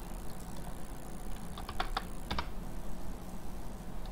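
A few quick computer keyboard keystrokes clustered around the middle, over a low steady hum.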